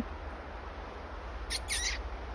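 Two short, high chirps close together about one and a half seconds in, from a small bird, over a steady background hiss.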